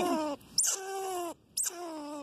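A rodent caught in a wire cage trap calling over and over, about one call a second. Each call opens with a short high squeak and then holds a steady tone.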